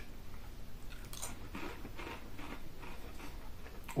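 A crinkle-cut potato crisp being bitten and chewed in the mouth: a crunchy bite about a second in, then a run of fainter crunches as it is chewed.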